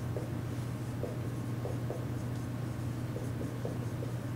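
Dry-erase marker squeaking and scratching across a whiteboard as a word is written in short strokes, over a steady low hum.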